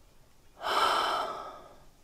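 A woman's long, heavy sigh of weariness: one breath out through the open mouth that starts abruptly about half a second in and trails away over about a second.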